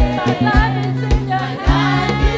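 Live gospel worship song: a lead singer and a group of backing vocalists singing with a band, sustained bass notes under a steady beat of about two drum thumps a second.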